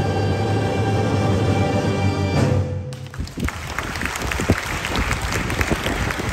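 Mixed choir holding the final chord of a song, which cuts off about halfway through; audience applause follows at once and runs on.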